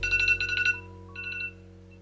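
Smartphone wake-up alarm ringing: a fast run of high electronic beeps for under a second, then a shorter second burst, over soft background music.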